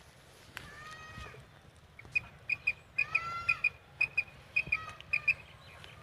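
Quail calls from a hand-worked tabcha (a quail caller), short sharp high pips in quick groups of two or three repeated for about three seconds, imitating quail to draw them toward the net. Two longer pitched calls that bend in pitch sound about a second in and again about three seconds in.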